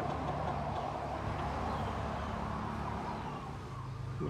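Kubota M6040 tractor's diesel engine idling steadily.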